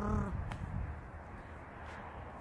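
A woman's voice holding a drawn-out, level-pitched vowel that trails off a fraction of a second in, followed by a steady low background rumble with a faint click.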